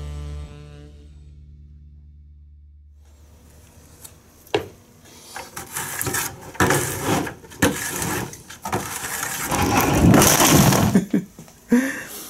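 Background music fades out, then a metal spoon scrapes and knocks inside a plastic pail as crystallized honey is dug out, in irregular strokes with sharp knocks. The strokes grow louder and more vigorous near the end.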